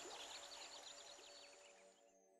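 Faint outdoor nature ambience: a light hiss with quick, high chirps repeating, fading out near the end.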